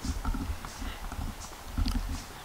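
Footsteps on a bare concrete slab floor, a few irregular knocks and scuffs over a low rumble.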